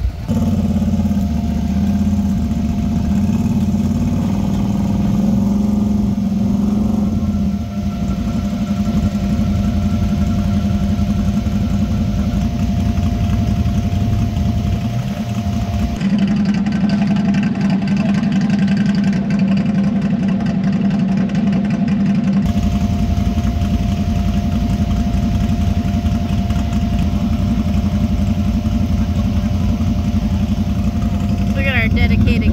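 Side-by-side UTV engine running steadily at an even speed, its pitch holding constant.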